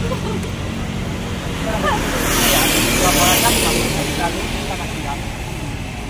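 Steady road traffic noise, with one vehicle passing louder in the middle, from about two to four seconds in.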